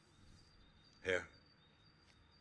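Quiet outdoor background with a faint, thin high tone that comes and goes. A man says one word, "Here," about a second in.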